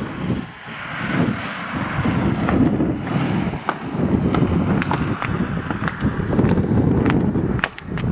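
Outdoor street noise: wind rumbling on a handheld camera's microphone, with scattered light sharp clicks throughout.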